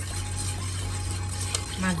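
A hand stirring washed rice grains and water in a rice cooker's metal inner pot, a soft wet swishing as the seasonings are mixed in.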